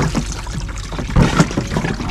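Water trickling and dribbling from a 20-litre plastic water-jug fish trap, with a louder splash or knock a little over a second in.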